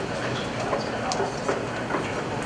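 Audience applauding: a dense, steady patter of many hand claps.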